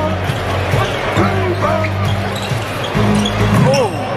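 A basketball being dribbled on the hardwood court of an NBA arena during live play, under arena music with a steady bass line and the voices of the crowd.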